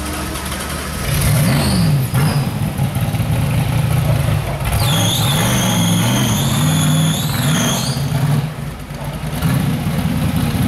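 Rock bouncer buggy's engine revving hard in repeated rising and falling bursts under load as it climbs a steep rock hill. A high squeal holds for about three seconds from about halfway in, and the revs drop briefly near the end before rising again.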